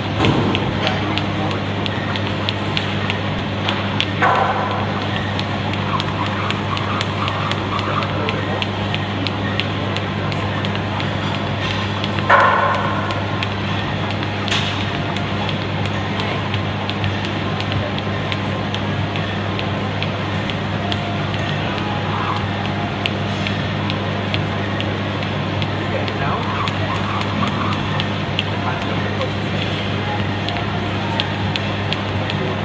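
Busy gym room noise: a steady low hum from running machines and ventilation, with distant voices. Over it come the light clicks of a jump rope striking the floor and a few louder knocks, the loudest about twelve seconds in.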